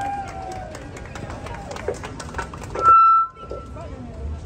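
Low murmur of voices and small knocks as a handheld microphone is passed to the next speaker, then a short, sudden PA feedback squeal about three seconds in that cuts off sharply.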